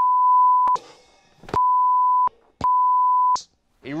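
Censor bleep: a steady single-pitch beep tone sounds three times, each lasting under a second, blanking out swear words.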